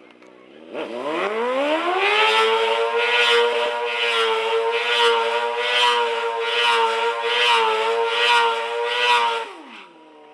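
Sport motorcycle engine revving up about a second in and held at high revs through a burnout, then the revs dropping away just before the end. Over the engine, the spinning rear tyre makes a rushing noise on the asphalt that swells and fades about once a second.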